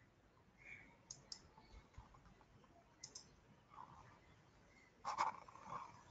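Faint computer mouse clicks in quick pairs like double-clicks: once about a second in, again about three seconds in, and a louder cluster about five seconds in.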